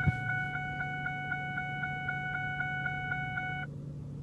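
A steady high electronic tone made of several pitches, pulsing about five times a second, that stops suddenly shortly before the end. A low steady hum sits under it.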